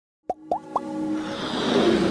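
Intro sound effects: three quick rising plops about a quarter second apart, then a swelling whoosh that builds with music.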